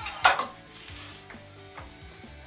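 A wooden board clatters against the metal table and fence of a mitre saw as it is set in place: one sharp knock early on, then softer knocks and rubbing. The saw's motor is not running.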